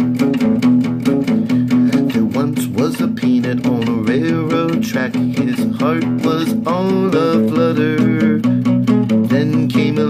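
Acoustic guitar played with a fast, even chugging strum on two-string E and B chords, changing back and forth between them.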